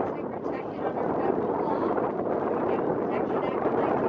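Wind blowing over the microphone aboard an open tour boat, a steady rushing noise with the indistinct chatter of passengers under it.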